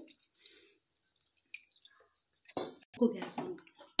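Water poured from a small bowl into an iron kadhai of frying masala paste, splashing in a few sudden bursts starting about two and a half seconds in, after a quiet stretch.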